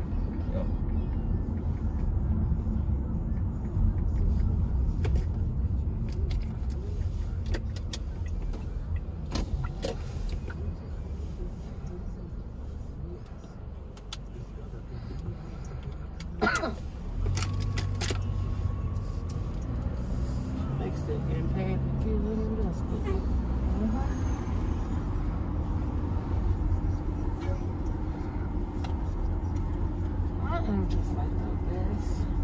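Low, steady rumble of a car's engine and tyres heard from inside the cabin while driving along city streets. It eases off about halfway through as the car slows for a stop sign, then grows again as it pulls away. A few sharp clicks sound just after the midpoint.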